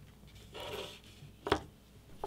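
A phone's glass back panel being put down on a desk: a soft rubbing slide, then one sharp tap about a second and a half in.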